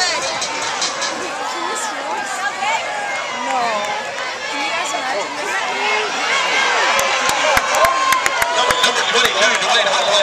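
Football stadium crowd shouting and cheering during a punt return, many voices at once, swelling about six seconds in, with a run of sharp clicks near the end.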